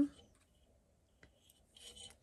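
Mostly near silence, with a small click about a second in and a faint rustle near the end of yarn being worked over a crochet hook and wire.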